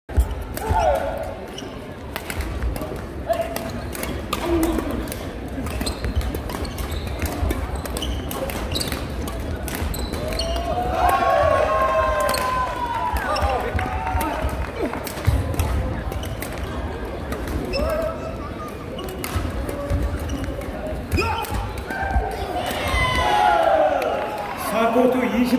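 Badminton doubles rally in a large sports hall: repeated sharp cracks of racket strokes on the shuttlecock and shoes squeaking on the court floor, echoing in the hall, with voices in the background.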